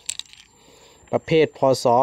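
A few quick, light metallic clicks as a small metal amulet medal is picked up and handled, then a man speaking.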